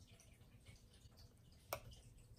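Near silence: faint room tone, with a single brief click near the end.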